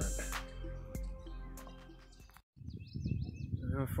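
Background music fading out, then after a brief break, birds chirping in a quick run of short falling chirps over low outdoor background noise.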